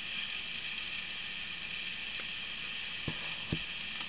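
Steady background hiss, with a faint tick about halfway through and two short soft knocks about three seconds in.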